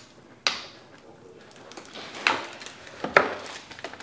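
Cardboard and plastic packaging being handled and cut open with a small box cutter: a few sharp clicks and knocks, about half a second in, past two seconds, and a couple just after three seconds, over soft rustling.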